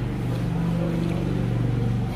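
A steady low motor hum running on through the whole stretch.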